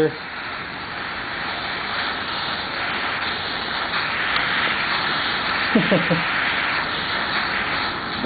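Gas torch flame hissing steadily as it heats a wet steel air-cleaner lid to boil off rainwater.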